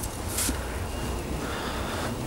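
Low, steady rumble of wind on the microphone, with a short rustle of handling about half a second in.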